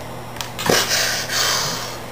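A person's mouth-made sound effect: a short falling voiced sound, then a breathy hiss lasting about a second, like an imitated splash or whoosh.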